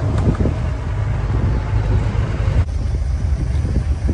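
Open safari jeep driving over a dirt forest track, heard from on board: a steady low engine and road rumble with wind on the microphone and a few short knocks from the vehicle jolting over the ground.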